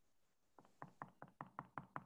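Faint rapid clicking at a computer, about eight quick clicks in a row starting about half a second in and growing louder, as presentation slides are stepped back one at a time.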